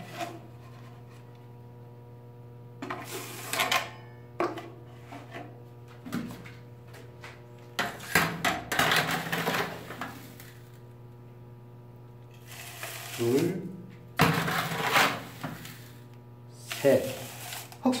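A plastic measuring cup scooping and pouring sand in several separate bouts of scraping against a plastic tub, with a sharp click about four seconds in. A low steady hum runs underneath.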